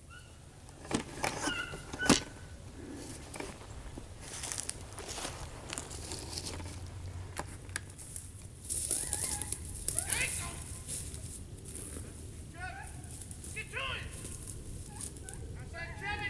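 Beagles baying faintly at intervals while trailing a rabbit through brush, with a couple of sharp snaps of brush in the first two seconds.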